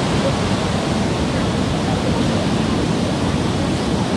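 Steady, loud rushing noise with no breaks, heaviest in the low end: the open-air noise of wind and surf at a seaside site.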